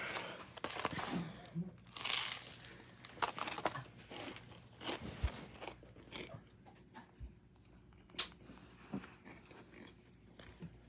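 Crunching and chewing of burnt toast, irregular crisp bites strongest in the first couple of seconds, then thinning out to a few sharp clicks.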